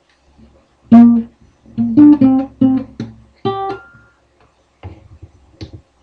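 Guitar playing a short riff: a single plucked note about a second in, then a quick run of notes ending on a higher note that rings out. Two faint clicks near the end.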